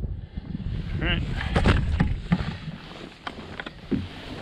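Wind rumbling on the microphone, with a few sharp knocks and clatters of gear being handled on a plastic kayak.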